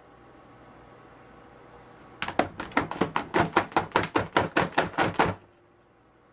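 Keys of a MacBook Pro laptop keyboard tapped rapidly, about seven or eight taps a second, starting about two seconds in and stopping about three seconds later.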